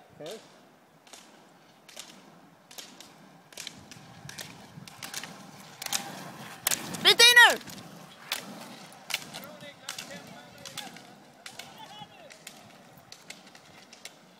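Roller-ski poles clicking sharply on asphalt, about two strikes a second, as skiers pole past, louder as they come close and fading as they go. A short, loud shout about seven seconds in is the loudest sound.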